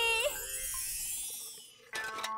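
A high, shimmering cartoon transition sound effect, like a tinkling sparkle, that fades away over about a second and a half. It follows the tail of a girl's drawn-out shout of "¡Sí!".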